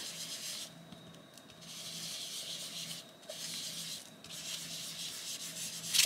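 Chalk pastel being rubbed onto a paper postcard by hand: a soft scratchy rubbing in about four strokes of roughly a second each, with short breaks between them.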